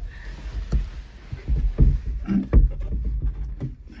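Heavy wooden window shutter being handled and fastened with its catch: a series of wooden knocks and bumps over rumbling handling noise.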